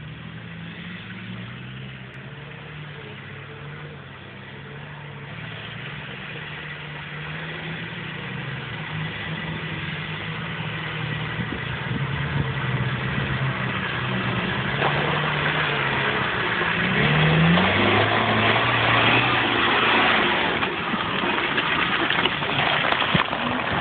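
Off-road 4x4's engine revving as it labours through deep mud, growing steadily louder as it approaches, with a rising rev about three quarters through.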